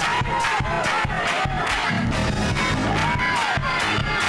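Gospel praise-break music, slowed down and pitched low in a chopped-and-screwed remix, with a steady drum beat and a congregation shouting over it.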